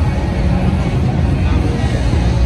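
Busy street ambience: car traffic and the chatter of a crowd blending into a steady din.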